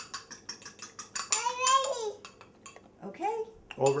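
A metal fork beating an egg in a small glass jar, clinking against the glass about seven times a second, stopping a little over a second in. A child's high voice follows, with speech near the end.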